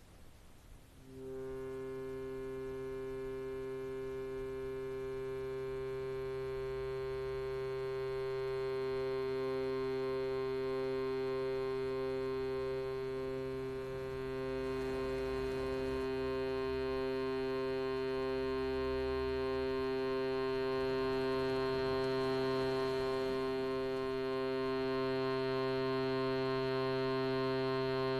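Shruti box drone: a steady reed tone on one low note with many overtones, starting about a second in and held unbroken, some of its upper tones pulsing gently.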